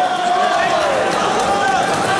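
Tournament crowd noise: many voices of spectators and coaches shouting and calling at once, overlapping, with one voice holding a long shout in the first second.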